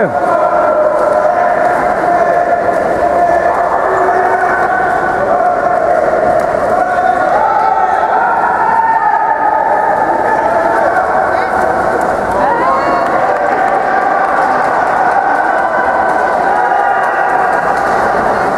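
Crowd of spectators shouting and cheering, many voices overlapping in a steady din inside an indoor pool hall.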